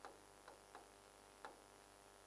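Near silence with four faint, irregular ticks of a pen touching and lifting from the writing board as a short word is written.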